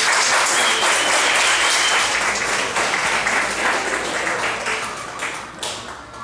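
Audience applauding, the clapping thinning out and fading near the end.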